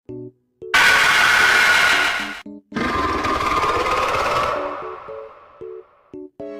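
Soundtrack of an animated cartoon: short, separate musical notes, broken by two loud noisy sound effects. The first starts about a second in and stops abruptly. The second follows straight after, lasts about two seconds and fades out, and then the notes return.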